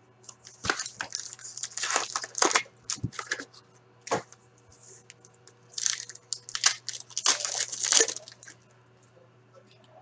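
Packaging of 2019-20 Upper Deck Trilogy hockey cards being torn open by hand: two bouts of crinkling and tearing, the first about a second in and the second around the middle, with a few sharp clicks between. This is a sealed hobby box being opened and then a foil card pack being ripped.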